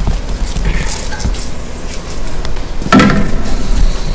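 Handling noise from protective covers being taken off a cruise missile: light knocks, clicks and rustling over a steady low rumble, with a louder knock about three seconds in.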